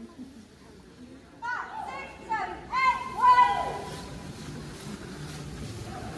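Girls' high-pitched cheering and shouting: several shrill calls starting about one and a half seconds in, the loudest just after three seconds, then continuing crowd chatter.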